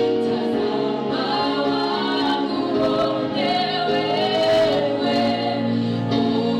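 Women singing a gospel worship song together into microphones, accompanied by strummed acoustic guitar.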